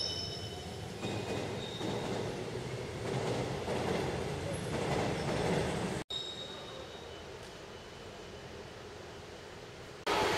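Railway station ambience: train noise from the tracks, with a few faint high squealing tones. About six seconds in it breaks off abruptly and gives way to a quieter steady hum.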